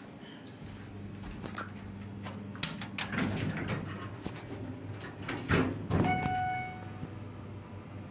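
Schindler MT 300A hydraulic elevator car doors sliding shut with knocks and clicks, over a steady low hum. A short high beep sounds near the start, and a single ringing chime tone sounds about six seconds in and dies away.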